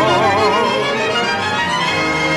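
Tango orchestra with violins and bandoneon playing an instrumental passage of a milonga. A held note with wide vibrato ends about a second in.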